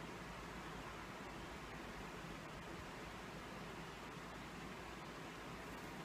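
Faint steady hiss of room tone and recording noise, unchanging throughout, with no distinct sound events.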